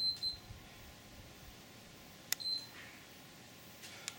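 Short, high electronic beeps: two quick ones at the start, then a sharp click followed by another beep a little over two seconds in.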